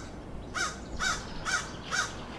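A crow cawing: four caws about half a second apart, each rising and falling in pitch.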